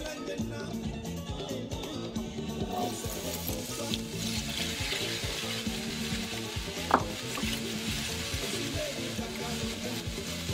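Mixed vegetables going into hot oil in a frying pan and sizzling, the hiss starting abruptly about three seconds in and carrying on steadily, with one sharp click about seven seconds in. Background music plays underneath.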